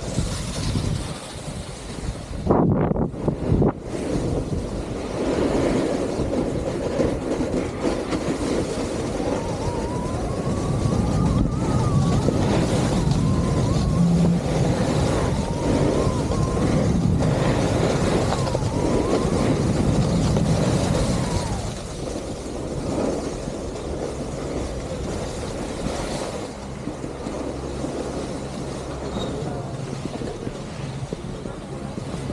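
Wind rushing over a helmet-mounted camera's microphone and a snowboard sliding and scraping over packed snow on a downhill run, with a few brief cut-outs of the sound about three seconds in.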